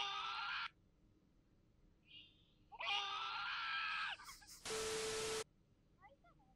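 High-pitched screaming in two bursts, the second long and held, then a short burst of hiss with a steady low tone under it about five seconds in.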